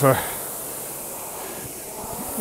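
Concept2 rowing machine's air-resistance flywheel whirring steadily as it spins between strokes, easing slightly during the recovery.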